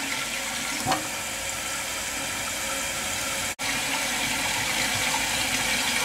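Kohler toilet tank refilling after a flush: water from the fill valve rushes steadily into the tank, with a momentary break about three and a half seconds in.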